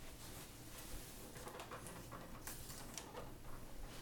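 Faint rustling and a few light clicks from a hand handling and twisting an indoor TV antenna, with a low room hum underneath.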